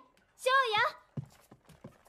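A voice calls out briefly about half a second in, then about four footsteps knock on a wooden hallway floor in the second half.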